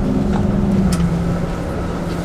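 Tour coach engine running, heard from inside the passenger cabin: a steady low drone whose pitch drops slightly about halfway through as the coach slows.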